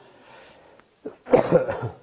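A man coughing, a short cough about a second in and then a louder, longer one just after.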